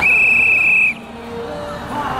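A single steady whistle blast, held just under a second, signalling the start of the parade. After it, quieter crowd and street noise.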